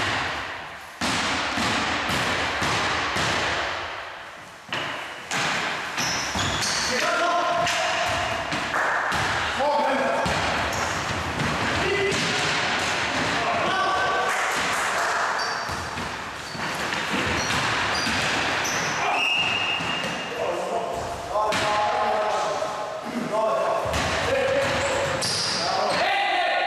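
A basketball bouncing on a wooden gym floor among players' shouts, all echoing in a large hall.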